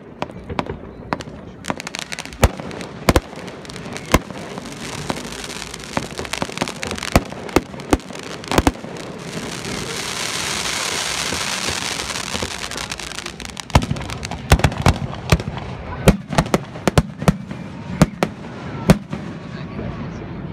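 Fireworks display: a run of sharp bangs from bursting shells, with a long hissing crackle swelling in the middle and a quick volley of bangs near the end.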